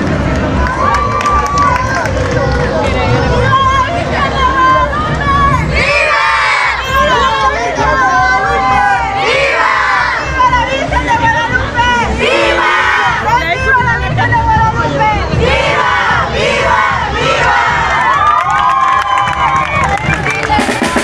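A crowd of young people shouting and cheering together, many voices overlapping throughout.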